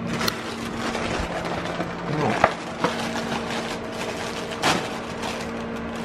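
Cardboard cereal box being pulled open and its plastic inner bag crinkled and torn, a run of rustling with several sharp cracks and rips. A steady low hum runs underneath.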